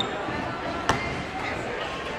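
Crowd chatter in a gymnasium, with a single basketball bounce on the hardwood court about a second in.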